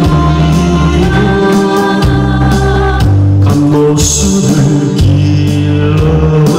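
A man singing a Korean song into a microphone over a recorded backing track played loud through a PA, with a steady, repeating bass line under sustained accompaniment.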